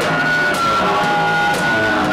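Loud live synthesizer music from modular and analog keyboard synths: several held tones over a dense noisy wash, with the pitches shifting every half second or so.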